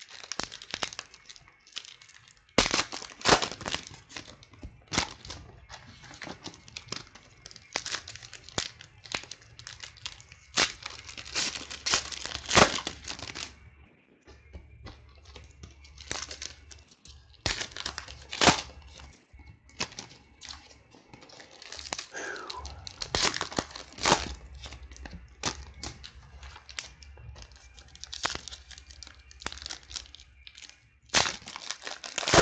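Foil wrappers of football trading-card packs being torn open and crinkled by hand, in irregular crackling bursts, with cards being handled between them.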